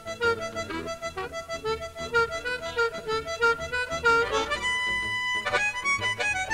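Amplified blues harmonica played through a cupped microphone, taking a solo of quick short phrases, with one long held note about two-thirds of the way through. Electric guitar, bass and drums play under it.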